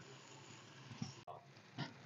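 Near silence, broken by a few faint brief sounds and one sharp click about halfway through.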